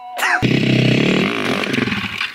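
Enduro motorcycle engine revved hard: it comes in suddenly about half a second in, holds high, then eases back a little.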